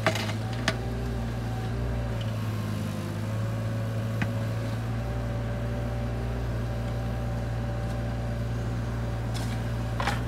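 Bobcat mini excavator's diesel engine running steadily under digging load, with a few sharp knocks near the start and once about four seconds in.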